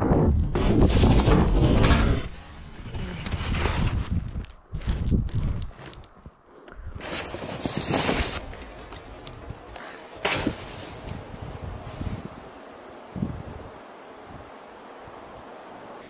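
Snowboard sliding and scraping over packed snow, with wind rushing past the helmet-mounted microphone, loud for the first two seconds of the run. After that come quieter, uneven scrapes and rushes, then a steady faint hiss.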